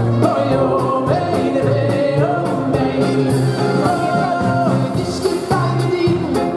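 Live band music with a male lead singer: a sung melody held and gliding over a steady drum beat and bass.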